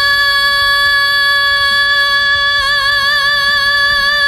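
Female singer's isolated lead vocal holding one long, high note at a steady pitch, with a slight vibrato coming in over the last second and a half.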